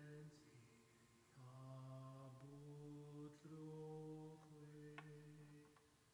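One voice singing a slow unaccompanied chant in a low register, softly, holding each note about a second before stepping to the next, with a short break about a second in.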